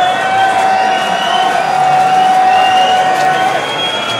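Electronic dance track played loud over a festival sound system, heard from inside the crowd. A long held synth tone stops shortly before the end, over a weak low pulse and crowd noise.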